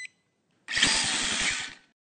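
Sound effect for an animated logo: a harsh, noisy buzz with a fast low pulse, about a dozen beats a second. It starts suddenly under a second in and lasts about a second.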